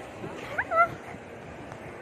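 A person's voice giving a short, high, rising squeal about half a second in, over steady background noise.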